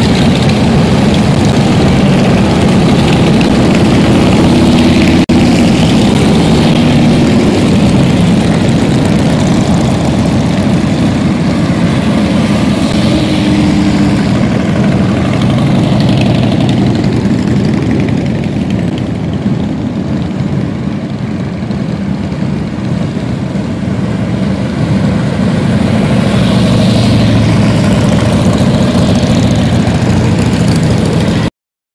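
A long procession of large touring motorcycles riding past one after another, their engines giving a steady, loud, overlapping drone. The noise thins for a few seconds in the middle as a gap in the column goes by, then builds again as more bikes come past near the end.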